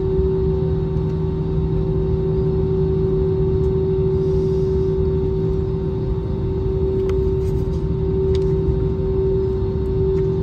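Airliner jet engines at taxi idle heard inside the passenger cabin: a steady low rumble with a constant droning hum. Two faint ticks sound near the end.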